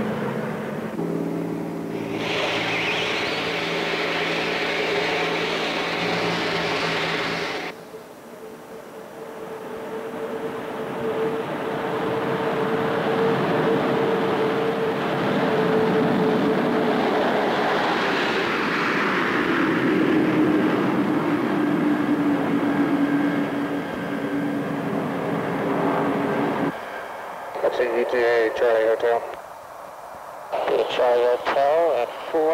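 B-52 Stratofortress turbojet engines running, a steady whine over a rushing hiss. The sound cuts off sharply about 8 seconds in, builds again over a few seconds to a steady whine, and drops in pitch about 19 seconds in. A brief crew radio voice comes in near the end.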